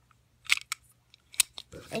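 A few sharp clicks and taps as a small die-cast metal toy car is turned over in the hands, the loudest about half a second in and another near a second and a half; a voice starts right at the end.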